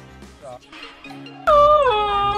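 Aftermarket car horn sounding once about one and a half seconds in: a single loud pitched tone that slides down and then holds steady, over background music.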